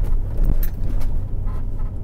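Low rumble of road and engine noise inside a 2003 Chevrolet Suburban's cabin as it drives over a speed bump at about 25 mph. A couple of short knocks come at the start and about half a second in as the suspension, fitted with new Bilstein 5100 shocks and springs, takes the bump.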